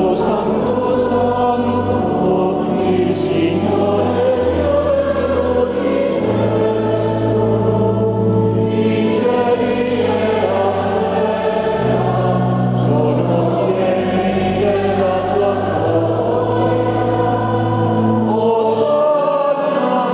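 A choir singing a hymn to pipe organ accompaniment, the organ holding long low notes that change every couple of seconds beneath the voices.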